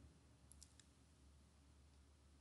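Near silence: room tone with three or four faint clicks of a computer mouse about half a second in.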